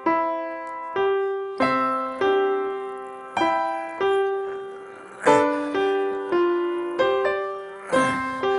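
Grand piano playing a slow, simple melody, every note struck separately with its own accent and left to die away, at a plodding, uneven pace: a deliberate imitation of a seven-year-old beginner who puts an impulse on every note.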